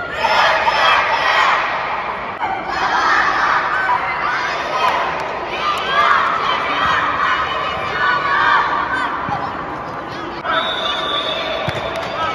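Young boys' football team shouting a team cheer together, in loud repeated bursts. Near the end a long steady whistle blast, the referee's signal to start play.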